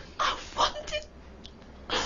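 A woman crying, with three or four short, choked, sobbing gasps of breath.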